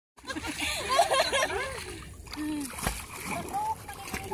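Water splashing as people swim and move in the sea beside an inflatable banana boat, with several voices talking and calling out over it. A single sharp thump comes about three seconds in.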